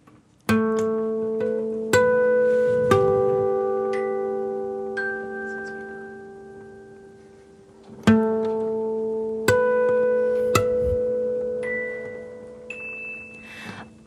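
Acoustic guitar playing a slow, sparse intro: plucked chords and single high notes are left to ring out and fade, in two phrases that each start with a few struck chords.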